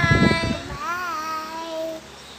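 A young child's voice drawing out a long, sung-out "bye", its pitch waving up and down about a second in and fading near the end.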